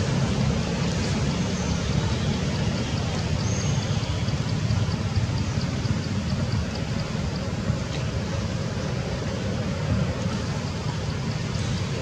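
Steady outdoor background rumble and hiss, with faint, fast, regular high ticking through the first half.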